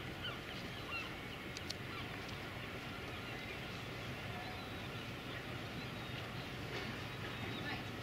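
Outdoor ambience: a steady low rumble with distant, indistinct voices and scattered bird chirps, plus a couple of faint clicks about one and a half seconds in.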